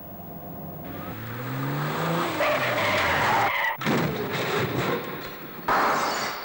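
Car engine speeding up with a rising note, then tyres skidding and screeching, followed by a crash. A second sudden loud burst near the end comes as the windscreen shatters.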